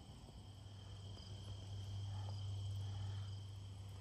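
Faint, steady, high-pitched insect trill in the yard, with a low hum swelling in the middle and easing off near the end.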